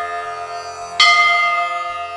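A bell rings: the ring of an earlier stroke fades away, then a fresh stroke about a second in rings on and slowly dies down, with several clear steady tones.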